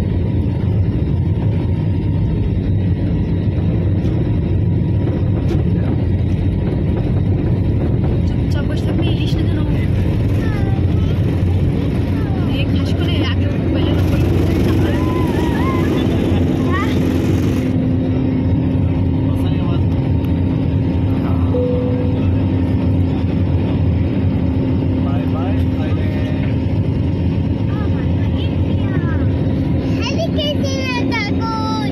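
Jet airliner's engines at takeoff thrust, heard from inside the cabin: a loud, steady rumble through the takeoff roll and climb-out, with a steady hum rising out of it about halfway through and a short burst of hiss around the middle.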